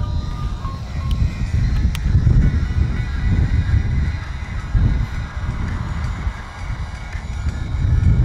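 Wind buffeting the microphone, an uneven low rumble that swells and fades, with faint background music underneath.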